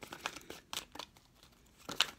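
Tarot cards being shuffled by hand: a run of soft card clicks and slides in the first second, a quieter stretch, then another snap of cards just before the end.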